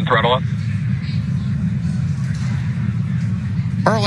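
Low, steady rumble of the Falcon 9 first stage's nine Merlin 1D engines in flight, throttled down through maximum dynamic pressure.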